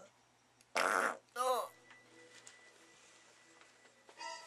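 Two short fart sounds about half a second apart from a man straining on the toilet, the first raspy, the second falling in pitch.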